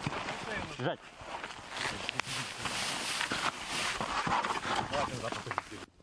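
Hurried movement along a trench: rustling and scuffing of gear, brush and footsteps close to the microphone, with scattered irregular knocks. A man's voice is heard briefly in the first second.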